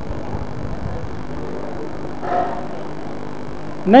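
Steady electrical hum under a lecture hall's background noise, with a brief faint voice a little after two seconds in.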